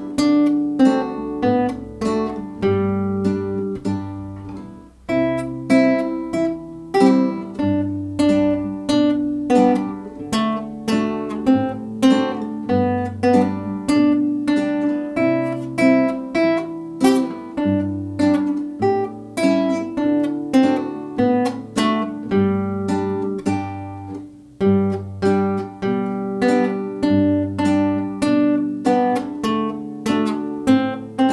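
Solo nylon-string classical guitar played fingerstyle: a simple plucked melody over low bass notes, with short breaths between phrases about five seconds in and again near the 24-second mark.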